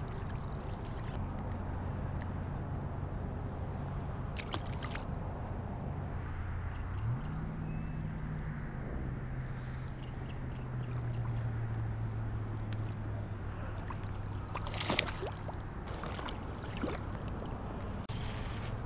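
Shallow water sloshing and splashing as a small hooked trout is played at the surface, under a steady low motor hum that rises in pitch about seven seconds in and then settles. A sharp splash or knock stands out about fifteen seconds in.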